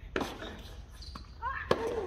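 Tennis rally on a hard court: a tennis ball struck by a racket just after the start, a faint bounce about a second in, then another sharp racket hit near the end.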